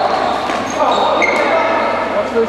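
Basketball play on a wooden sports-hall court: a ball bouncing, voices calling out and short high squeaks from trainers, all echoing in the hall.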